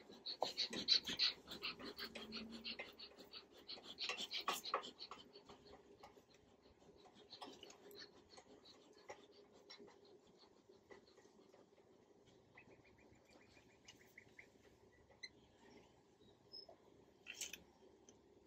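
Faint steady hum of honeybees from an open hive, with a few short hissing puffs from a bee smoker's bellows in the first five seconds.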